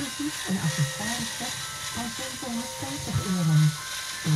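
Small electric motors of a LEGO Technic trail jeep whining as it crawls over logs, under a voice and music.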